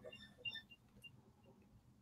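Near silence: room tone, with a few faint, short high-pitched blips in the first second.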